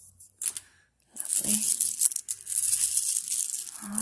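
A heap of mixed buttons clattering, clicking and sliding against each other as a hand rakes through them. The sound starts just after a second in and goes on as a dense, continuous rattle.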